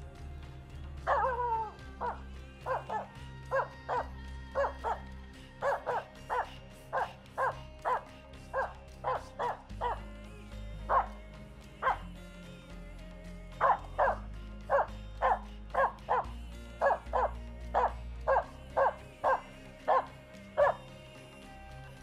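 Finnish Spitz barking over and over in a steady run of short barks, about two a second, for most of the stretch.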